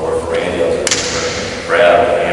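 A man speaking, lecturing to an audience, with one sharp crack a little under a second in, followed by a brief hiss.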